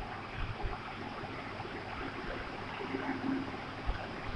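Steady low background noise with faint scratching of a marker writing on a whiteboard.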